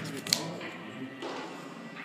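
A sharp tap on the tabletop about a third of a second in, with a smaller click just before it, amid soft handling of playing cards.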